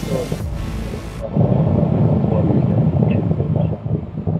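Background music over a loud, low rumble; a high hiss over everything cuts off suddenly about a second in.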